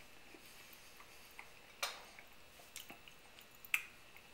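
Faint sounds of eating at a table: a few soft clicks and taps of bread and cutlery on a plate, the sharpest about two seconds in and just before the end.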